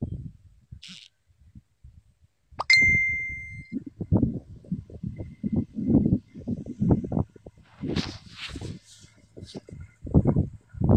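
A single metallic clang about two and a half seconds in, ringing on as a clear high tone for about a second. After it come irregular low thumps and rumbles.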